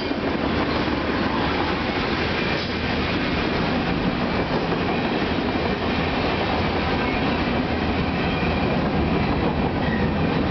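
A Union Pacific mixed freight's tank cars and covered hoppers rolling past close by: a steady noise of steel wheels on rail.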